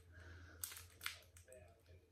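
Faint crinkling and crackling of a Tootsie Roll's waxed-paper wrapper being worked open by hand, with two sharper crackles about two-thirds of a second and a second in. A steady low hum runs underneath.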